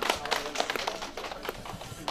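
Scattered hand clapping from a small seated audience: separate, irregular claps that thin out near the end.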